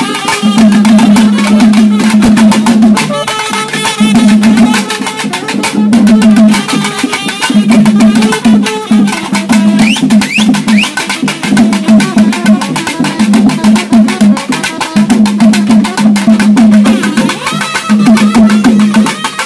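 Naiyandi melam folk band playing: nadaswaram reed pipes carry a loud, sustained melody in short phrases over dense, fast beating from barrel drums and a large drum.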